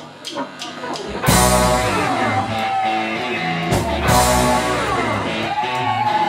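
A few evenly spaced clicks, then about a second in a live rock band comes in loud. Several electric guitars play over bass guitar and drums.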